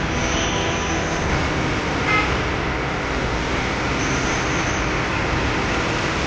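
Fire engine running its pump, with a high-pressure water jet spraying and splashing down; a steady, even rushing noise.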